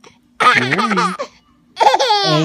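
A laugh lasting about a second, followed near the end by a higher-pitched baby's laugh.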